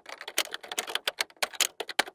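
Typewriter keystrokes used as a sound effect: a rapid, slightly uneven run of sharp clicks, about nine a second, following the letters as they appear.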